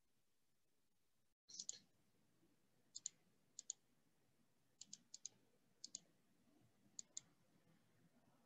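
Faint, sharp clicks, mostly in quick pairs, about six pairs spread over several seconds, following a brief total dropout in the audio.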